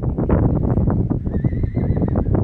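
Wind buffeting the microphone throughout, with a horse's whinny in the second half: a faint, wavering call.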